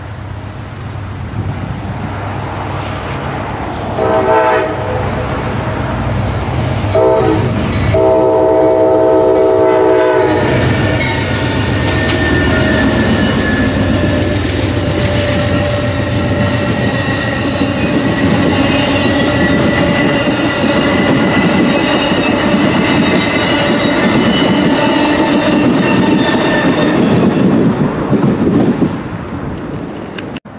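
Amtrak Coast Starlight approaching behind GE P42 diesel locomotives. Its air horn sounds a short blast about four seconds in, another around seven seconds, then a long blast from about eight to ten seconds, sounded for the grade crossing. The locomotives and double-deck passenger cars then roll past loudly and steadily until near the end.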